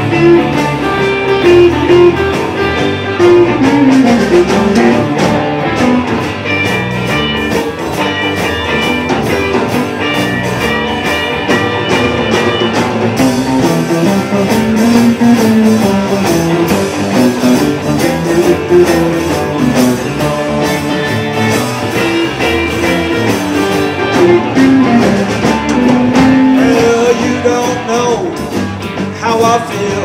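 A live blues band of electric guitars, lap steel guitar, bass and drum kit playing an instrumental passage, with gliding notes, ahead of the sung verse.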